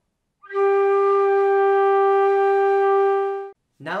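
Concert flute playing a single sustained G, the G above middle C, held at a steady pitch and level for about three seconds. It starts about half a second in and stops abruptly.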